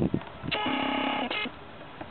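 A steady pitched electronic tone or horn sounds for about three quarters of a second, then again briefly just after, then cuts off.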